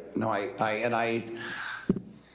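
A man speaking in a meeting room, hesitant and halting, with a short low thud near the end.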